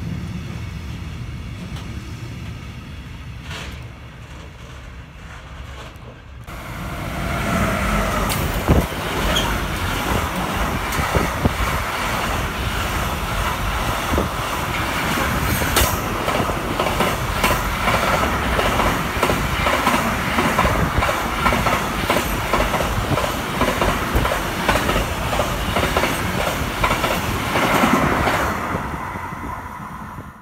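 Freight wagons rolling past on the rails: first a quieter low rumble, then from about six seconds in a louder, steady run of a long freight train of wagons carrying lorry trailers, with dense rapid clicking of wheels over the rail joints. The sound fades away near the end as the last wagons pass.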